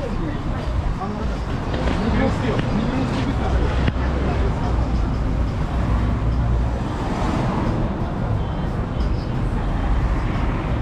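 Roadside street noise: traffic going by with a steady low rumble, heaviest in the middle, and indistinct voices in the background.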